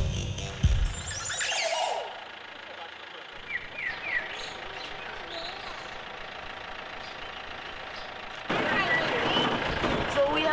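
Background music cuts off at the start. Over a quiet outdoor background there are a few short rising bird chirps, about four seconds in. Near the end the noise of the open safari jeep running comes in, with voices.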